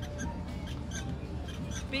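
Fairground background: faint music over a steady low hum, with scattered short high-pitched blips.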